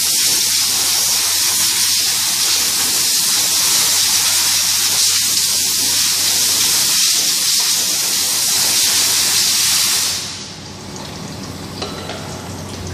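Compressed-air blow gun hissing steadily as it blasts air into the stainless mesh basket of a water-pump Y-strainer, blowing it dry after washing; the hiss cuts off suddenly about ten seconds in.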